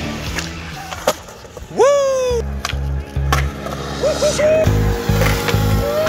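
Skateboard on concrete: sharp clacks of the board popping, hitting and landing, three in all, over rock music. A loud pitched cry rises and falls about two seconds in.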